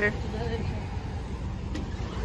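Low steady rumble of outdoor background noise, with the last syllable of a spoken word at the very start.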